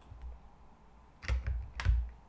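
Two sharp computer clicks about half a second apart, in the second half, each with a low thump, over faint room tone.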